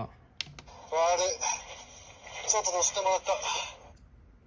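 Ultra Replica Orb Ring toy playing a recorded voice line through its small built-in speaker, in two short phrases. A plastic button click comes about half a second in.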